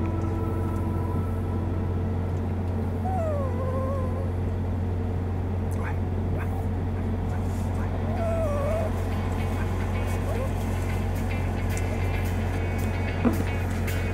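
Steady low drone of a vehicle on the road, heard from inside, with a small dog's high whimpers that glide down in pitch, once about three seconds in and again around eight seconds.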